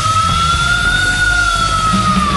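Hard rock music: a lead electric guitar holds one long high note that bends slowly up and back down, over bass and drums.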